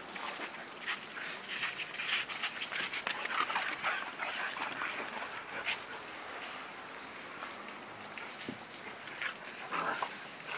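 Pit bull puppies whimpering and yipping as they play, with a dense patter of short scratchy clicks in the first half and a brief whine near the end.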